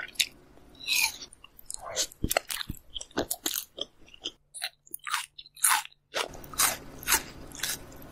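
Close-miked ASMR eating sounds: a quick run of crisp, crunchy bites and chewing, broken by a short silent gap about halfway where clips are spliced together.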